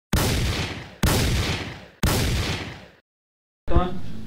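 Three shotgun-blast sound effects, about a second apart, each a sudden bang whose boom fades away over roughly a second.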